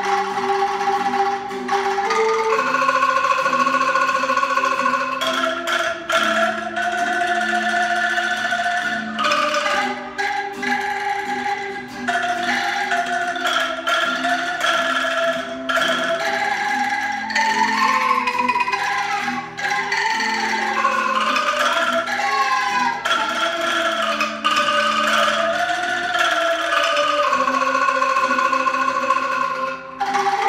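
Angklung ensemble playing a melody: the bamboo tubes are shaken into sustained, rattling chords that change step by step. A solo melody line slides in pitch above them in the middle.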